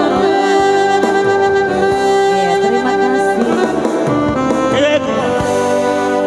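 A live song sung into microphones over an electronic keyboard played through PA speakers. A saxophone-like melody line holds long notes; the first second has wavering, vibrato-like notes.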